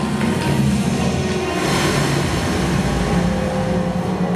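Film soundtrack music over a steady, heavy low rumble, played through a theatre's sound system.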